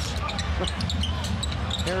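NBA game court sound: a basketball dribbling and sneakers squeaking on the hardwood, with a steady arena crowd rumble underneath.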